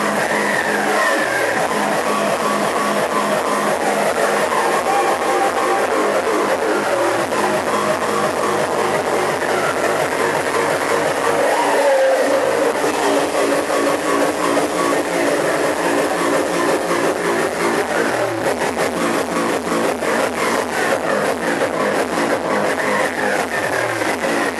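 Hard techno played loud over a club sound system: a driving, evenly repeating kick-drum beat under distorted synth lines that glide up and down. The kick drops out briefly about halfway through and comes back.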